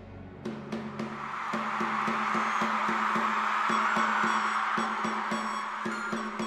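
Instrumental music from a live stage performance: rapid repeated strokes over a held low note, swelling in loudness over the first few seconds.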